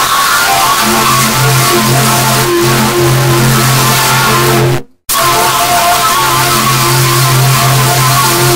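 Loud logo jingle music put through 'G Major' style audio effects, heard as held pitched notes. About five seconds in it cuts briefly to silence, then starts again.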